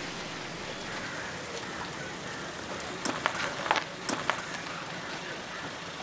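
Steady outdoor background hiss, with a quick cluster of sharp clicks and knocks about three to four seconds in.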